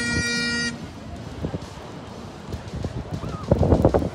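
Great Highland bagpipe sounding a held note over its steady drones, cutting off suddenly under a second in. It is followed by outdoor background noise, with a few low thumps near the end.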